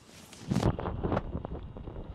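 Rustling and flapping of stretchy compression-pant fabric being handled and turned right side out, starting about half a second in, with a few small handling clicks.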